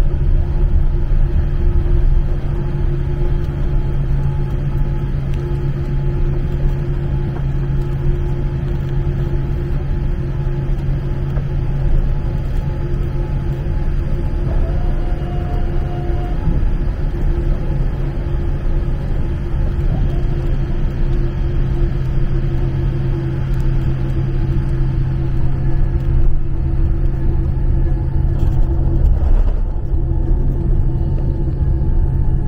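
Jet airliner cabin noise while taxiing after landing: a steady low rumble from the engines at idle, with a constant hum.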